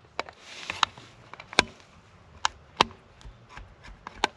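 A small screwdriver undoing the terminal screws on an LED downlight driver's terminal block: a series of irregular sharp clicks and light scrapes, with a soft rustle in the first second.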